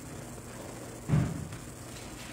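A single dull thump on a wooden pulpit about a second in, as a sheet of paper is laid down onto the lectern. Quiet room tone around it.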